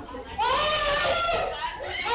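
A child crying and wailing in long high-pitched cries, one starting about half a second in and another near the end.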